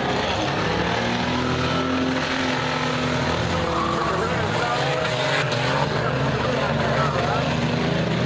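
A field of race cars running laps on a dirt oval, many engines overlapping and rising and falling in pitch as they pass.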